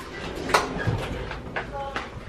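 A single sharp click or knock about half a second in, with faint talking in the background.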